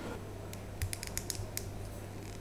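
A quick run of sharp small clicks, about seven or eight over a second, as the parts of a Beyblade Burst spinning top are twisted and fitted together in the hands.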